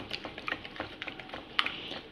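Red silicone-coated whisk beating a runny egg mixture in a bowl by hand: quick, irregular light ticks of the wires against the bowl with a wet swishing.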